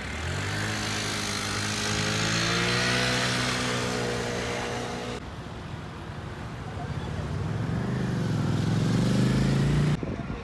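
Street traffic: a road vehicle's engine running, its note rising a little and then holding, until it cuts off abruptly about five seconds in. Then a car's engine pulling away, rising in pitch and getting louder toward the end.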